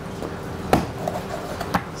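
Two sharp knocks of a knife against a plastic cutting board while a rabbit carcass is being cut into pieces: a louder one a little under a second in and a lighter one near the end.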